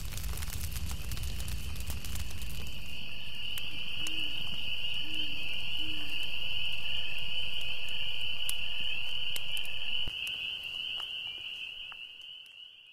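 Night insect chorus: a steady high-pitched trill that grows stronger about three seconds in, with three short low calls between about four and six seconds in and scattered faint clicks. The sound drops at about ten seconds and fades out.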